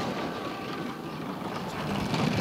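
Two-woman bobsleigh running fast down the iced track, its steel runners giving a steady rumble and hiss on the ice.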